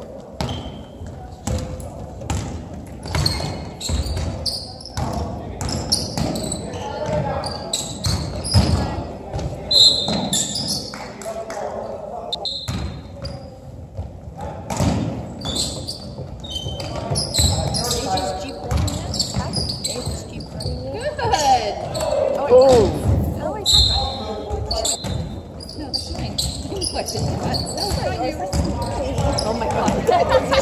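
Basketball bouncing on a hardwood gym floor as players dribble during a game, with short high squeaks among the knocks and indistinct voices of players and spectators, all echoing in a large gym.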